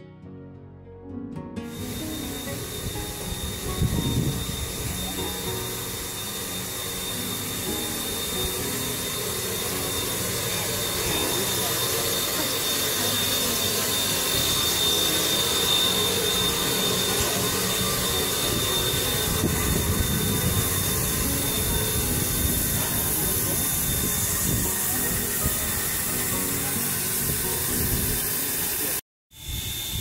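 Narrow-gauge steam locomotive standing in the yard, steadily hissing steam, with a thin high whistling tone running through the hiss and low rumbling underneath.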